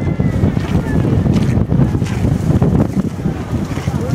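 Wind buffeting the microphone in a dense, steady low rumble. Near the start come a few faint gliding cries from yellow-legged gulls circling overhead.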